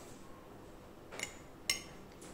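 A fork scrapes softly and then clinks once sharply against a plate near the end, over quiet room tone.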